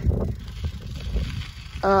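Wind buffeting the phone microphone: an irregular low rumble. A voice starts just before the end.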